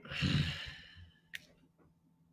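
A man's sigh: a breathy exhale lasting about a second, followed by a single sharp click.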